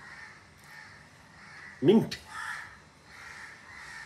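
Crows cawing faintly in the background, a soft call about once a second.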